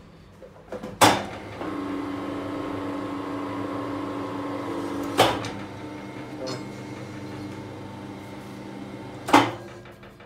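ICARO rebar bender's electric motor and geared bending table running with a steady hum while bending a steel rebar around 180 degrees. Loud sharp clicks come about a second in, about five seconds in and near the end, and the hum drops slightly after the middle click.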